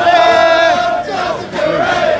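A loud, drawn-out shout held for about a second over the voices of a crowd, followed by shorter calls.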